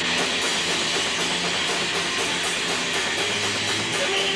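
Rock band playing live: distorted electric guitar, bass guitar and drum kit, with quick, evenly spaced cymbal strokes. The full band comes in hard right at the start.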